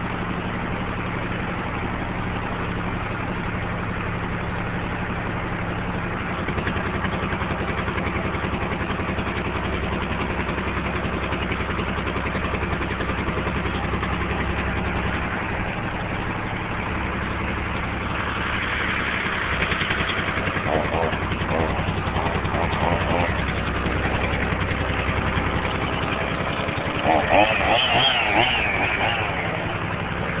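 An engine running steadily, a little louder from about six seconds in, with people's voices calling out about two-thirds of the way through and again near the end.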